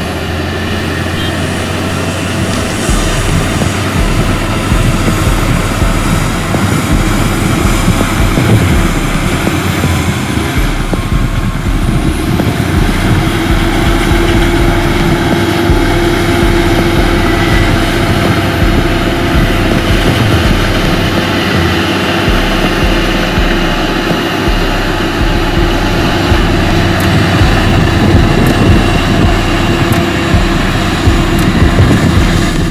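A Komatsu D85E crawler bulldozer's diesel engine running steadily under load as it pushes dirt, with a steady whine joining in about twelve seconds in.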